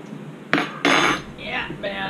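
A spoon clattering against dishes: two sharp clinks about half a second and a second in, followed by voices.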